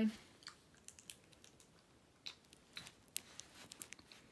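Soft, irregular clicks of biting off and chewing a piece of grape Laffy Taffy.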